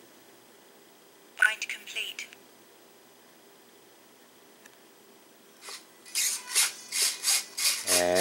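A short electronic voice or beep alert from the Spektrum DX6 transmitter's speaker about a second and a half in, as binding to the HobbyZone Champ completes. From about six seconds, a run of short buzzes, about three a second, from the freshly bound Champ's servos working.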